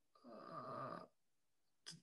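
Near silence, broken by one faint, short vocal hum from a man, under a second long, about a quarter second in.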